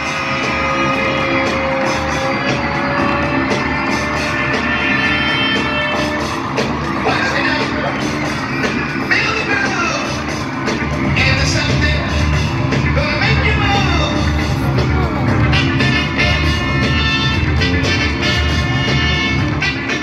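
Live amplified music with a steady beat and singing, filling a large arena and heard from the upper seats.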